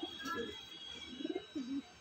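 Domestic pigeon cooing: low coos about a third of a second in, then a longer run of coos in the second half.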